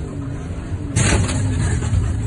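Safari vehicle's engine running with a steady low rumble, with a sudden loud rush of noise about a second in.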